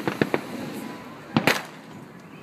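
Fireworks going off: a quick run of three or four sharp cracks right at the start, then a louder pair of bangs about a second and a half in.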